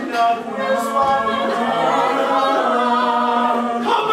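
A group of young voices singing together on long held notes, without instruments.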